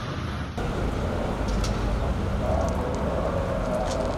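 Steady low rumble of a running vehicle engine, with outdoor street noise and a faint wavering tone in the middle range from about halfway through.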